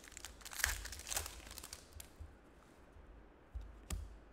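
Trading card pack wrapper being torn open and crinkled in the hands, crackling most in the first second and a half. One sharp click comes near the end.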